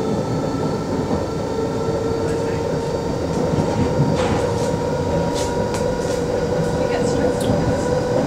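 Inside a moving London Underground train: the steady running rumble of the carriage on the track, with a steady whine and a few light clicks.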